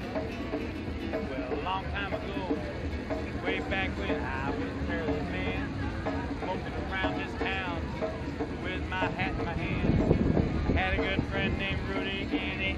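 Acoustic guitar strummed as a song intro, its chords held and ringing under the chatter of people around. About ten seconds in, wind buffets the microphone with a brief low rumble.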